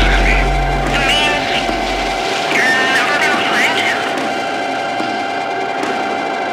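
Dark industrial hardcore track in its closing stretch: a steady droning tone with wailing, pitch-bending vocal-like sounds over it in short phrases. The deep bass drops out about two seconds in.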